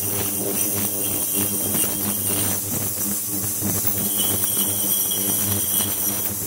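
Ultrasonic cleaning tank running, with its transducer driving cavitation in the water: a steady buzzing hum under a high hiss and a faint crackle.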